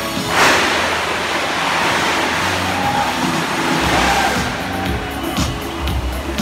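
Fountain water jets shooting up together with a sudden rush about half a second in, then the spray hissing and splashing for several seconds over music from the show's loudspeakers. A steady beat comes into the music near the end.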